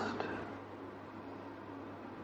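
Faint, steady hiss with a low hum underneath: background room noise.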